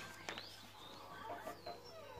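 A paper catalogue page turning, with a few clicks early on, then a short run of clucking calls like a chicken's a little past the middle.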